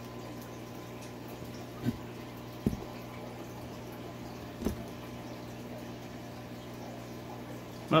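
Steady flow of water from an indoor pool pond's filter return, running over a low pump hum, with three faint short knocks in the first five seconds.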